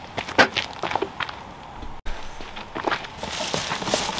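Handling noises from unpacking a large cardboard box: scattered knocks and clicks over the first couple of seconds. After a brief gap about halfway, a steadier rustling and scuffing of cardboard and packaging follows.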